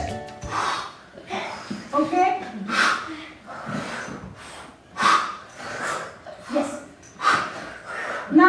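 A group of children making short, forceful breaths out together in a breathing exercise, about one a second, with a few short voiced sounds between them.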